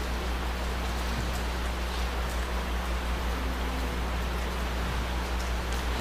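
Steady room tone: an even hiss with a constant low electrical hum underneath, and a few faint clicks.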